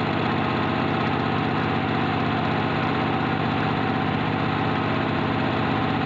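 Engine sound effect, running steadily at a constant pitch and level.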